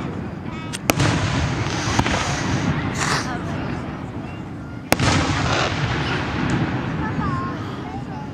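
Aerial firework shells bursting overhead: sharp bangs about one, two and five seconds in, the last the loudest, over a continuous low rumble of echoing booms.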